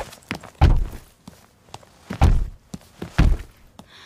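Cartoon foley of a heavy sack bumping up stair steps as it is dragged: three loud low thuds about a second apart, with lighter taps and clicks between them.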